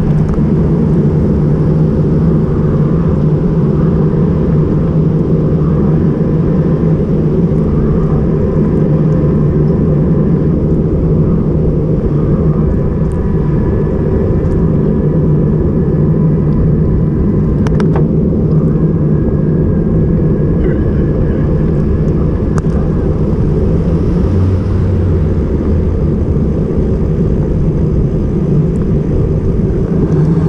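Steady low rumble of wind buffeting and tyre noise picked up by a camera on a moving bicycle, with a few faint ticks, the clearest about 18 seconds in.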